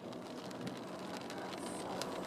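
Rain pattering on a car's roof and windscreen, heard from inside the cabin, with a steady low hum underneath.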